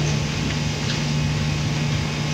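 Steady low hum with an even hiss underneath, unchanging throughout: the room's and the recording's background noise in a pause between words.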